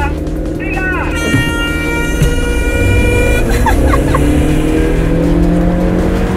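Two SUVs accelerating hard from a standing start in a drag race, their engine notes climbing steadily in pitch over the last few seconds. Early on, a steady high tone holds for about two seconds.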